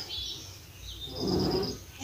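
Faint high, thin chirps of small birds, strongest a little past a second in, over a soft low sound.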